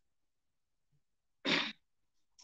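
Silence, then a single short vocal sound from a woman about one and a half seconds in.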